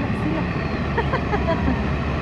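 Steady low outdoor rumble, like traffic or engine noise, with faint voices in the background.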